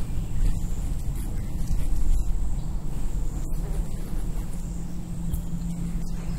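Steady outdoor background noise: a low rumble with a faint, steady high-pitched tone above it.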